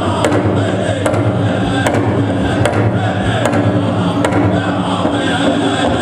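Powwow drum group singing a buckskin contest song in unison over a large shared drum struck at a steady beat, a little over one stroke a second.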